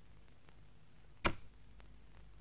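A very quiet film soundtrack broken by one short, sharp sound effect about a second in, which dies away within a quarter of a second.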